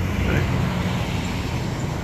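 Steady low rumble of urban road traffic.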